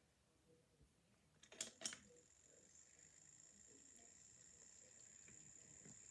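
Two sharp clicks about one and a half seconds in, then a Barbie toy blender's small motor running with a faint, steady, high whine.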